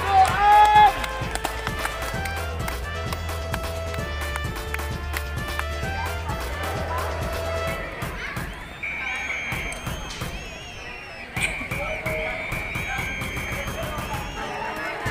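Background music with a steady low beat, which drops away about eight seconds in, leaving higher held tones. A man's voice over a public-address system trails off in the first second, and there is a single sharp knock near eleven seconds.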